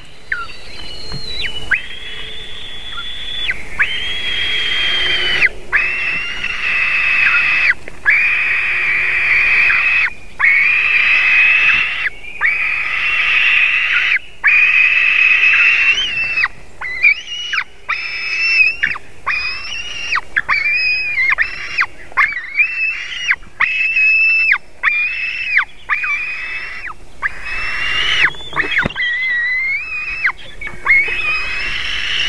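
White-tailed eaglets begging for food while being fed, a run of high, drawn-out whining calls. The calls last a second or more each at first, then come shorter and quicker from about halfway on.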